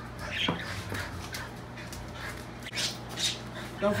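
A few short, faint pet-animal noises in a small room, over a low steady hum.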